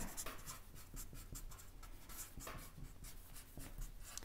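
Marker pen writing letters on a board: a faint run of short scratchy strokes, one after another.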